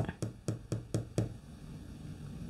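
Fingers tapping on a tarot card lying on a wooden table: about seven quick light taps over the first second or so, then they stop.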